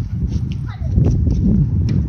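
A tennis ball knocking sharply several times, struck off rackets and bouncing on the court, over a steady low rumble of wind on the microphone.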